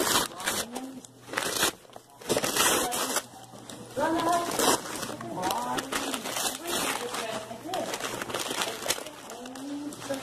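Paper gift bag and tissue paper rustling and crinkling in bursts as a present is pulled out, with voices talking indistinctly in the room.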